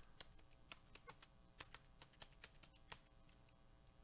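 Faint, irregular clicks of typing on a computer keyboard, a few keystrokes at a time with short gaps, over near-silent room tone.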